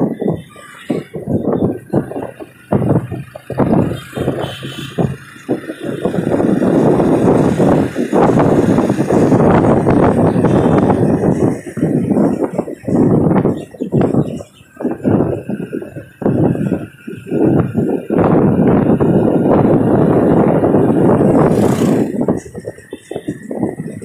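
Moving motorcycle: wind rushing over the microphone together with engine and road noise. It comes in choppy gusts for the first several seconds, then turns into a louder, steadier rush broken by brief dips.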